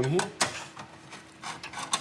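Screwdriver backing a Phillips-head screw out of the steel hard drive cage of an Acer Aspire XC-840 desktop: a sharp click just under half a second in, then soft scraping and small metal clicks.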